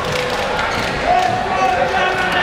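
Badminton players' shoes squeaking on the court floor over a murmuring crowd in a large hall, with a sharp knock about a second in.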